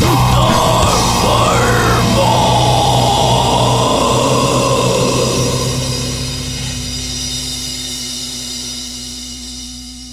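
Heavy post-rock band music: loud distorted guitars and drums for the first couple of seconds, then a held chord that slowly fades away.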